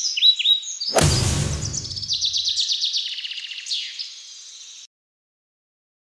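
Songbirds chirping and trilling, with a whoosh and low boom about a second in. Near the end the birds run into a fast, even trill of about ten notes a second, then all sound cuts off abruptly.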